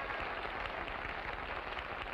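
Studio audience applauding steadily at the end of a song.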